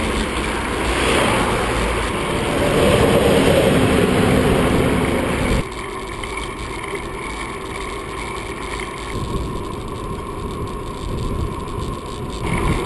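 Wind and road rush on a bicycle-mounted action camera riding beside highway traffic, swelling louder for a few seconds. About halfway through it cuts suddenly to a quieter, steady rush of riding.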